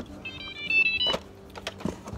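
A short electronic jingle, a quick run of high beeps changing pitch lasting under a second, like a device's power-on chime, followed by a couple of handling clicks.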